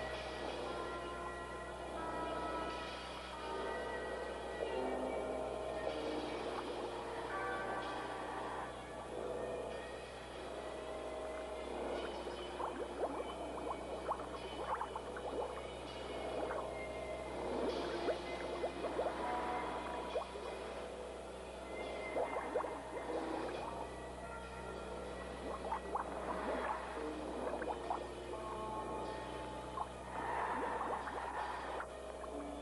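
Film score music of held, layered tones, with scattered short bubbling sounds in the second half, typical of scuba divers' exhaled air underwater.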